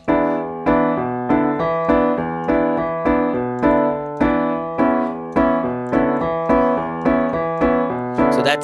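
Piano playing a syncopated classic-rock bass riff on E in the left hand under repeated block chords, the pulse chords, in the right hand, with a fresh attack about every half second.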